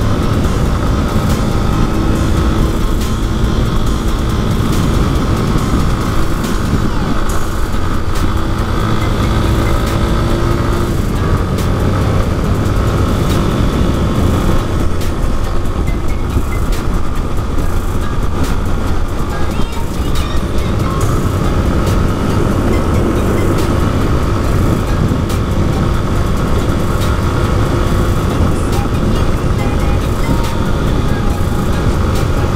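Yamaha Fazer 250 single-cylinder motorcycle engine running steadily at road speed, mixed with wind rushing over a helmet-mounted microphone.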